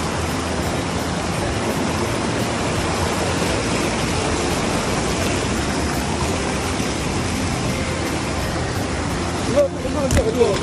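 Shallow stream rushing and splashing over rocks, a steady, full noise of white water. The sound drops out suddenly for a moment shortly before the end.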